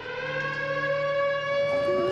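Hand-cranked mechanical siren wailing. Its pitch rises slightly as it winds up, then holds a steady tone.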